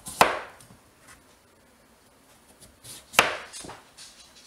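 A chef's knife chopping down through raw peeled pumpkin and striking the cutting board: two sharp chops about three seconds apart, with a few lighter knocks of the blade around the second.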